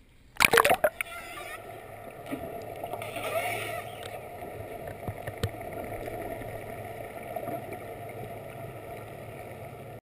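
Sea water heard through a GoPro's waterproof housing: a loud splash about half a second in as the camera goes under, then a steady muffled underwater rush with a low hum and a few sharp clicks.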